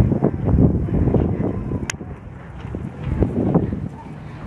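Wind buffeting the camera microphone in uneven gusts, a low rumbling roar that swells and drops.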